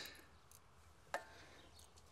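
Near silence, with one sharp metallic click and a brief ring about a second in, from the thermostat or tools being handled at the engine's thermostat housing.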